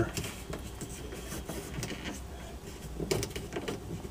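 Faint clicks and handling sounds of a refrigerator's temperature control dial being turned colder, with a few louder clicks about three seconds in. The compressor and fan motor do not kick on.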